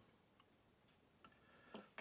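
Near silence with a few faint, short ticks: a small screwdriver tip pressing a flexible connector strip into the groove of an LCD frame.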